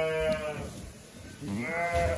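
Sheep bleating: one call fades out under a second in, and a second bleat starts about a second and a half in.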